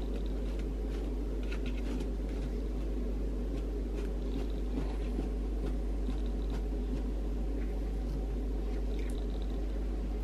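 A knife cutting through a slab of set marshmallow in a paper-lined tray, giving a few faint soft squishes and light taps, over a steady low background hum.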